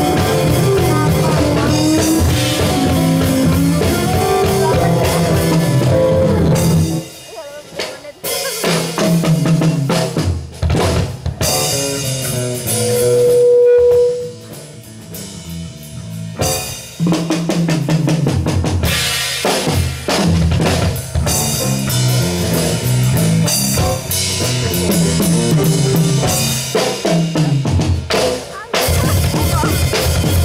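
Live band playing, with drum kit and bass prominent. About seven seconds in it thins to a sparse drum break with scattered hits and one loud held note, and the full band comes back in around seventeen seconds.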